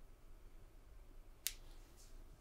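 Quiet room tone broken by a single sharp click about one and a half seconds in.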